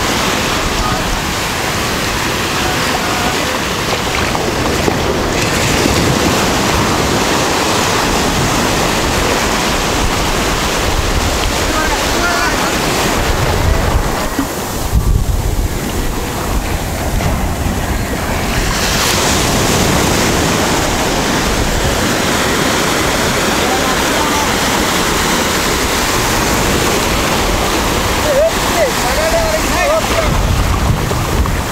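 Small waves breaking and washing up a sandy beach, a steady surf, with wind buffeting the microphone in gusts.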